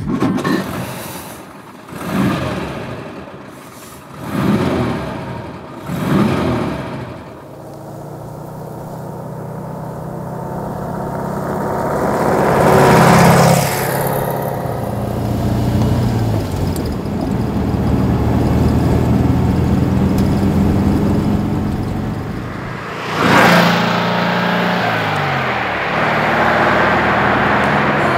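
Porsche 356 Pre A's air-cooled flat-four engine started with the dash push-button and blipped in short revs a few times. It then runs under way, its note building to a loud peak about halfway through and again near the end.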